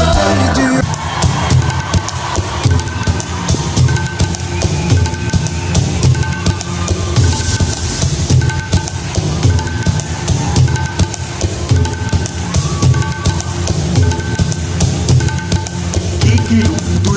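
Pop-style band music in an instrumental passage without singing: a steady drum-kit beat under a short high note figure that repeats over and over. A held chord gives way to the beat about a second in.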